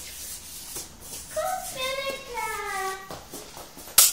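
A young child's high voice calling out a drawn-out, sing-song phrase that falls in pitch, starting about a second and a half in and lasting over a second. A sharp knock comes right at the end.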